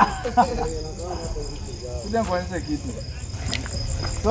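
Crickets chirping steadily, a continuous high trill with evenly repeating pulses, under low talking voices.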